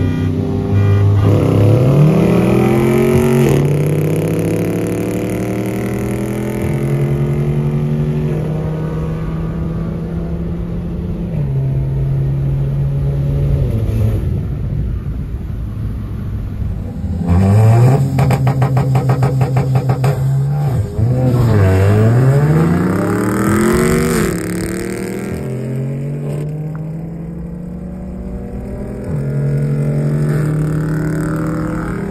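Car engines pulling hard in a roll race, heard from inside a car: the revs climb steeply and drop at each gear change. There are two hard pulls, one about a second in and another around the middle, the second with a fast rattle as it starts.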